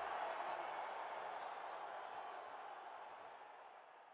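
Arena crowd cheering and applauding, fading out steadily.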